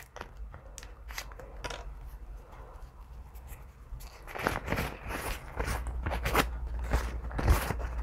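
A moist towelette packet being torn open by hand and the wipe pulled out and unfolded: scattered small crinkles and tearing sounds, sparse at first and getting busier about halfway through.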